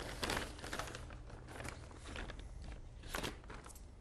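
Clear plastic bag crinkling and rustling in a few short bursts as wires are pulled out of it by hand.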